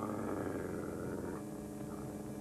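A canine growl from an animated wolf, starting suddenly, rough and gritty, and cutting off after about a second and a half.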